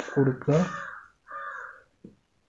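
Loud, harsh calls of a bird, three in quick succession in the first two seconds, the first two mixed with a man's brief low voice.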